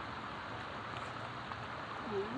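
Shallow creek water running steadily over rock ledges and riffles.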